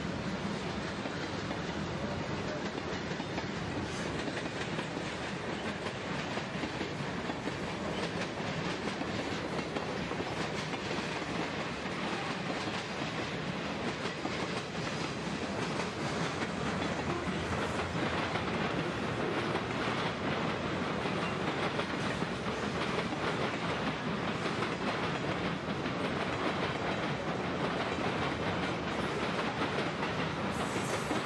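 Freight train cars rolling past: a steady rumble of steel wheels on rail with the clickety-clack of wheels passing over rail joints.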